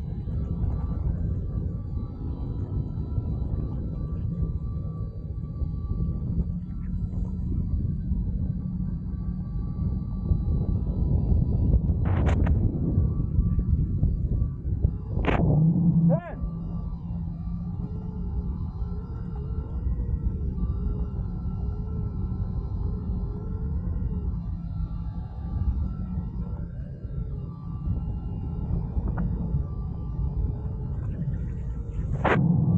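Wind and water rushing past a board-mounted camera on an electric hydrofoil board (Fliteboard) riding at speed, with a steady thin whine over the low rumble. Two short sharp sounds come near the middle.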